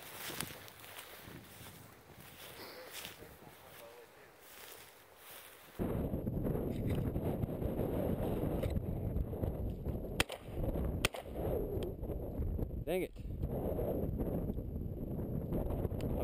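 Wind buffeting and dry grass rustling on a head-mounted camera as the hunter walks in on the dog's point, with two sharp shotgun shots about a second apart about ten seconds in. The first few seconds are fainter wind.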